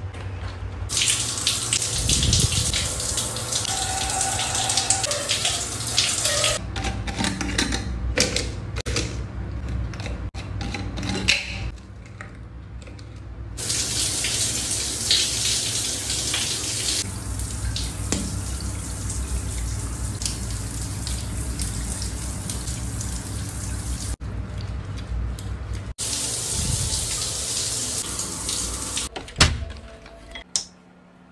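Running water, a steady spray hiss that breaks off and resumes a few times.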